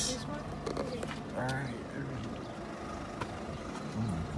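A car's engine and tyre noise heard from inside the cabin while driving slowly, with a short stretch of low voices about a second and a half in.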